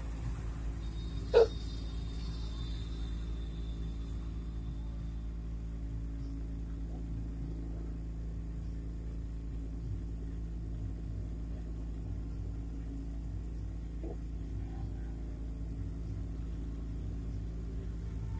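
Hot-air SMD rework station blowing steadily over a water-damaged phone circuit board, a low steady rush of air and fan. About a second and a half in there is a single sharp click with a faint high ring that fades over a few seconds.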